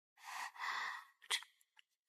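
A woman's soft breathy sighs, two short breaths close together, followed by a single brief click.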